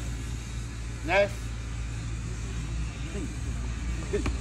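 A man's short call about a second in, over faint voices and a steady low rumble.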